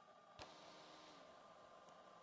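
Near silence: a single faint click about half a second in, then faint hiss.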